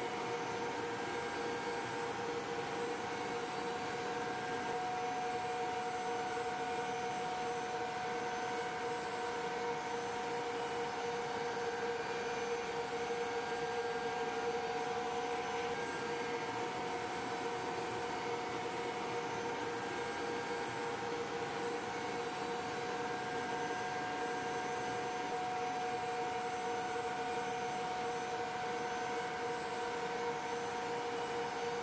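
Steady drone of the AC-130J gunship's four Rolls-Royce AE 2100 turboprop engines, heard from inside the fuselage. It is a constant rush with several steady tones running through it, and one of the tones drops out about halfway.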